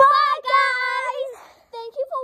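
A young girl singing two drawn-out high notes, a short one and then a longer one, before talking resumes near the end.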